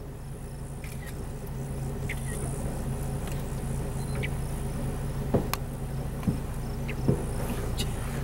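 A vehicle engine idling with a steady low hum, with insects buzzing high and faint in the background. A few small clicks come in the second half.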